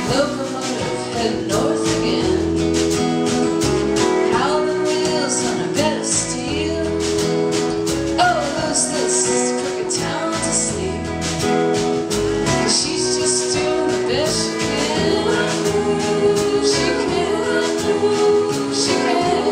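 Live band performing a song: guitar with a steady strummed rhythm under singing voices.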